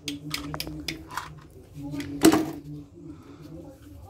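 Plastic toy tools being handled and knocked together: a few light clicks and taps, with one louder knock a little past two seconds in, over a steady low hum.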